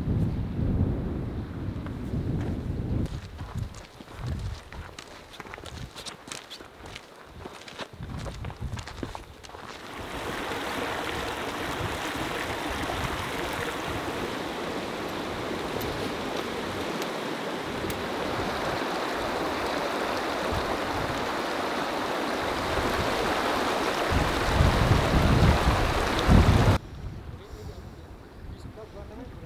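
Wind buffeting the microphone in gusts, then the steady sound of a mountain stream flowing over boulders from about a third of the way in, with wind gusting over it again near the end before the sound cuts off abruptly.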